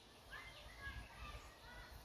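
Faint bird chirps, a few short calls scattered through an otherwise near-silent pause, over a low background rumble.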